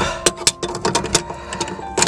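Channel-lock pliers clicking against the locknut of a new kitchen sink strainer basket as it is snugged up from below: a run of irregular sharp clicks.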